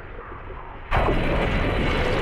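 Water churning as a great white shark thrashes with a seal in its jaws: a muffled low rumble that breaks about a second in into a sudden, loud rush of splashing water.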